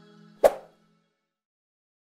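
A single sharp click-like pop sound effect about half a second in, over the last notes of outro music fading out.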